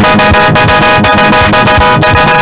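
Loud music: a sustained keyboard chord held over a steady drumbeat.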